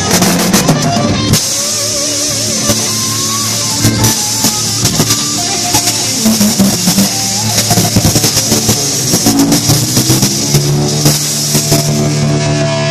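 A rock band playing live and loud: a drum kit with steady cymbals and frequent drum hits, under a bass guitar and an electric guitar.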